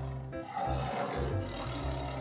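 A recorded angry-tiger roar sound effect playing from small computer speakers, over background music with a repeating low bass line.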